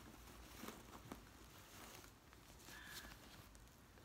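Near silence: faint rustling and a couple of soft clicks as a crystal is worked out of its wrapping by hand.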